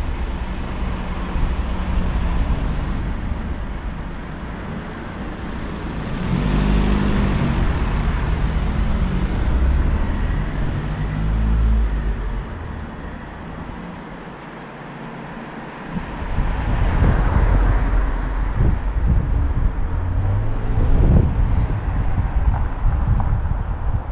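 Street traffic noise: cars passing on a town road, with an uneven low rumble that eases for a couple of seconds in the middle before rising again.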